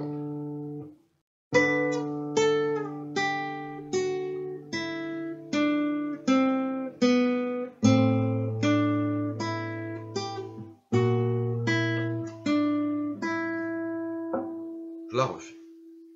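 Nylon-string classical guitar played fingerstyle: a slow melody of single plucked notes, about one or two a second, over sustained bass notes. The phrase ends on one note left ringing.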